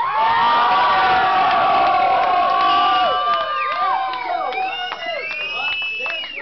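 Club audience cheering between songs at a live rock show, full of long, high-pitched whoops and screams from many voices at once.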